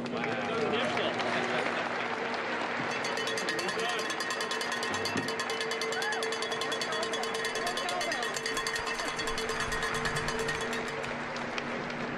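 Electric arc welding on the keel authentication plate: a rapid, even crackle starts about two and a half seconds in and stops about a second before the end, as the welder lays down the sponsor's initials. A crowd murmurs beneath it.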